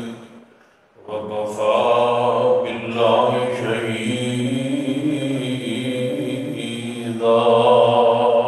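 A man's voice chanting a melodic recitation in long, drawn-out held phrases, starting about a second in after a brief pause.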